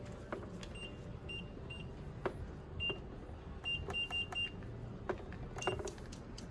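Short, high electronic beeps from the control panel of an auto SMP 'air dot' scalp-tattoo machine as its buttons are pressed to change settings: about nine beeps at one pitch, irregularly spaced, with a quick run of four in the middle, along with faint button clicks.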